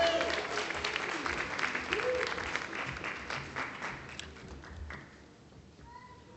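Audience applauding, dense clapping that thins out and dies away near the end, with a single voice calling out about two seconds in.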